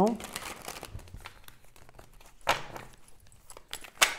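Deck of oracle cards being shuffled in the hands: a soft, continuous card rustle, with a sharp card snap about two and a half seconds in and another near the end.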